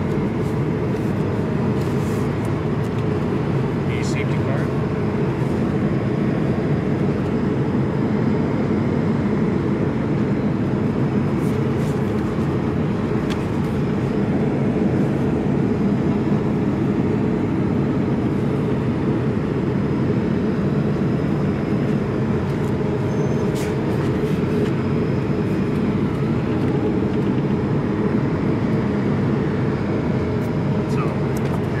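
Steady low cabin roar inside an Airbus A220-100, the noise of airflow and its two Pratt & Whitney PW1524G engines, at an even level. A couple of faint clicks stand out, about four seconds in and again past twenty seconds, as the paper safety card is handled.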